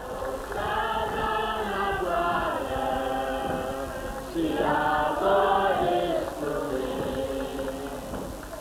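A choir singing slowly, several voices together holding long notes in phrases, with a louder phrase starting about four seconds in.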